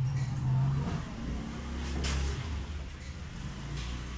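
Felt-tip marker strokes on a whiteboard as ovals are drawn, a few short scratchy swipes, the longest about two seconds in. Under them runs a steady low engine-like rumble that shifts in pitch now and then.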